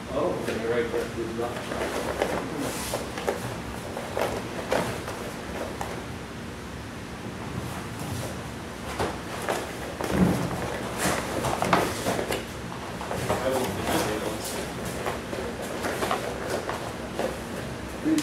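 Scattered knocks and thuds of bare feet and bodies on vinyl-covered foam mats during aikido practice, the loudest about halfway through, with low voices in the background.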